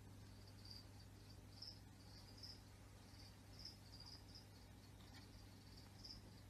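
Faint cricket chirping in short, irregular chirps, about one or two a second, over a low steady hum.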